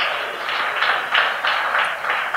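Audience applauding, starting suddenly and holding steady.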